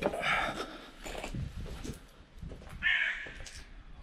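Two short, harsh, caw-like calls about two and a half to three seconds apart. Between them are a few soft knocks and scuffs, like footsteps on concrete rubble during a climb.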